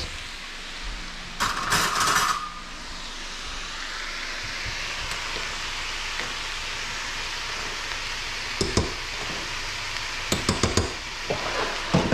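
Stir fry sizzling steadily in a frying pan. There is a brief louder rush about one and a half seconds in, and a few sharp metal clinks on the rice saucepan near the end.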